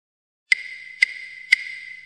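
Electronic ticking sound effect: starting about half a second in, three sharp ticks half a second apart over a steady high ringing tone.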